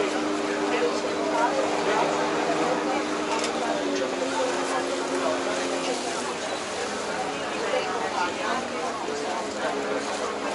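Steady hum of boat engines on the water, stepping down in pitch about four seconds in and fading near six seconds, with people talking around it.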